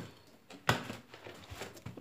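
Repotting handling noise: a single sharp knock about two-thirds of a second in, as a plastic plant pot with bark potting mix is moved in a plastic basin, followed by faint small clicks and rustles.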